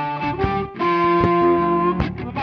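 Guitar being played: picked notes and chords ringing out, with sharp plucked attacks and a slight bend upward in one note.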